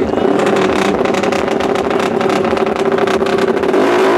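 Drag-racing motorcycle engine revved hard and held at a steady high rpm, its open exhaust crackling.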